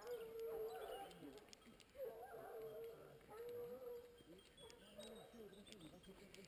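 Hunting hounds baying faintly, in long drawn-out howls: one long call, a longer one about two seconds in, then shorter calls near the end. The pack is giving tongue on a wild boar's trail.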